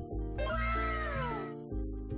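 A single long cat meow, starting about half a second in and falling in pitch over about a second, laid over background music with a steady bass line.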